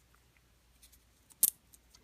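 Nylon zip tie handled: a few faint clicks and one short, scratchy rasp about one and a half seconds in, as the tail is pushed into the tie's ratchet head.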